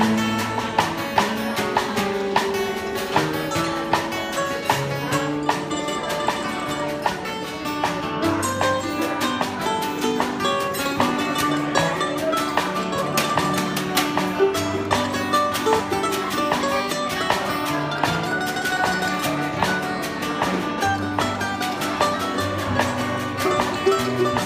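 Acoustic country band playing an instrumental break: an F-style mandolin picks a fast lead line over strummed acoustic guitar, bass notes and steady hand-drum taps.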